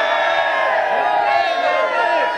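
A crowd of young people cheering and yelling together, many voices overlapping in one sustained shout.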